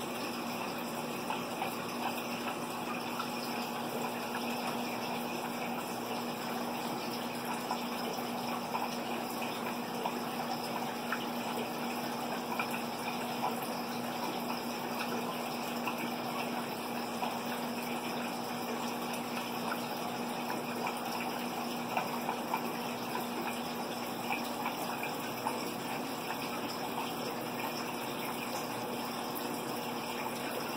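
Aquarium water circulation: water running and trickling steadily through the filtration and a hang-on breeder box, with a steady low hum underneath.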